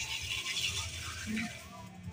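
A woman's short closed-mouth "hmm" of enjoyment while eating, about a second in, over a faint low hum. A soft hiss fades out in the first half-second.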